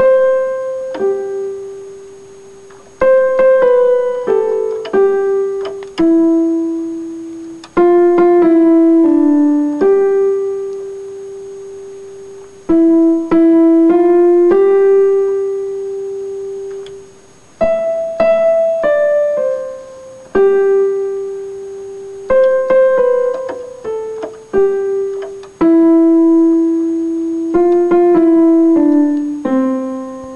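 Casio electronic keyboard with a piano sound playing a simple melody one note at a time, in short phrases of a few notes, some notes held and left to fade before the next phrase starts.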